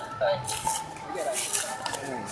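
Paper sticker and plastic wrapping crinkling and rustling in short crisp bursts as fingers peel the label off a plastic-wrapped fabric roll.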